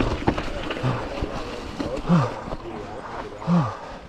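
A mountain biker's voiced exhales: two falling, groan-like sighs, about two and three and a half seconds in. Under them are wind rumble on the camera microphone and a few sharp rattles of the bike on the trail early on.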